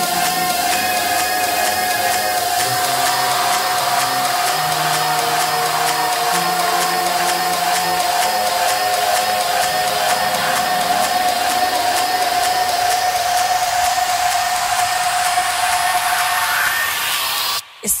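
House music breakdown: a held synth tone over slowly changing sustained pad chords, with a noise sweep rising in pitch through the second half. The sweep cuts off suddenly just before the end as the vocal comes back in.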